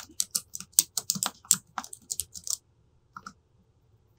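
Typing on a computer keyboard: a quick run of keystrokes for about two and a half seconds, then a couple more clicks a little after three seconds in.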